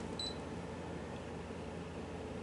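Brother ScanNCut SDX225 cutting machine's touchscreen giving a single short high beep as its OK button is tapped with a stylus, over a faint low steady hum.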